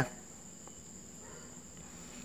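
A faint, steady high-pitched tone with a weak low hum beneath it, unchanging.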